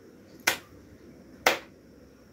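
Two sharp hand slaps, a small child's palm striking an adult's raised palms in a clapping game, about a second apart.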